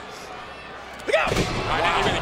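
Two wrestlers landing on the wrestling ring mat after a dive off the ropes: a sudden heavy thud about a second in, followed by raised voices.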